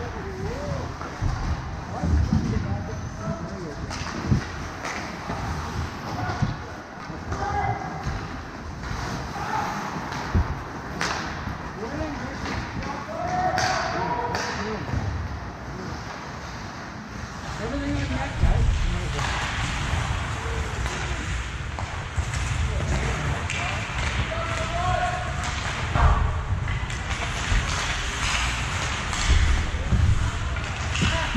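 Ice hockey rink ambience in a large echoing arena: scattered distant shouts and calls from players and onlookers, with occasional sharp knocks. It gets busier and louder a little past halfway.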